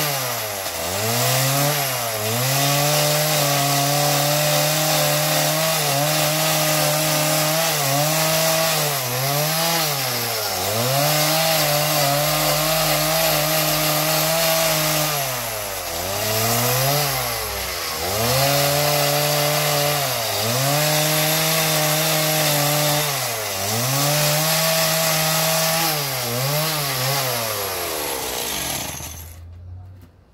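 Chainsaw cutting through a wooden board at high speed, its pitch repeatedly dipping and recovering every second or two. It cuts off shortly before the end.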